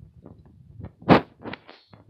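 Handling knocks and rustling as a wire is fished behind a car's plastic dashboard trim, with one louder knock about a second in and a few smaller ones around it.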